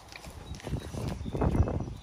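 Soft scuffing steps on concrete, a string of dull scrapes and taps from about half a second in, as paws or feet shuffle on the driveway.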